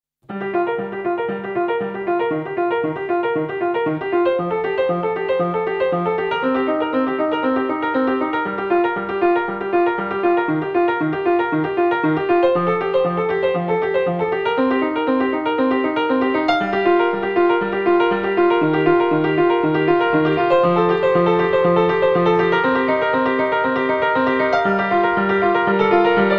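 Solo piano playing an evenly pulsed pattern of short repeated chords over a repeating bass note, starting abruptly just after the opening and growing slightly louder.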